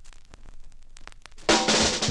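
A vinyl 45 record's lead-in groove playing with faint, irregular clicks and pops. About one and a half seconds in, the soul record starts with a loud drum-kit intro.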